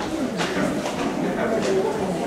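Murmur of people talking in the background, with a bird cooing.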